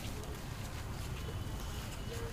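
Steady low rumble of wind buffeting the microphone, with faint scattered clicks and a thin high tone in the second half.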